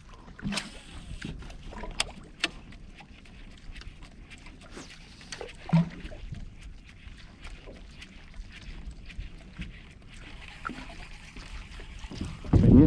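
Small waves lapping and sloshing against the hull of a small fishing skiff, with scattered light clicks and knocks from gear aboard, one louder knock about six seconds in.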